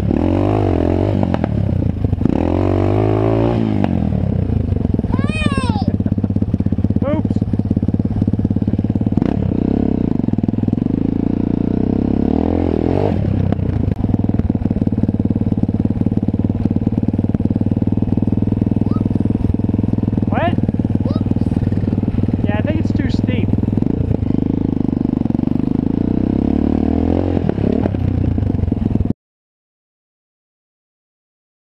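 Small single-cylinder dirt bike engine running close by, revving up and easing off several times. It cuts off suddenly near the end.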